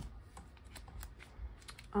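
Light handling noises: a sharp click at the start, then a scattering of soft clicks and rustles as a hand works at a small black snap-strap wallet on a desk.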